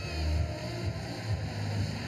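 Wind rumbling on an outdoor microphone: a low, uneven buffeting rumble with a faint airy hiss above it.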